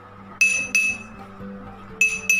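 A metal spoon tapped twice against a drinking glass partly filled with water, each tap giving a clear, high, ringing clink that fades out, over soft background music.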